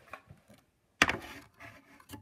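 Handling noise from plastic toys being set on a hard surface: one sharp knock about a second in, then softer rubbing and a smaller knock.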